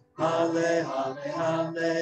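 A man's unaccompanied voice singing a slow, chant-like phrase of held notes through a headset microphone, starting just after a short breath. It is the sung Gospel acclamation before the Gospel reading.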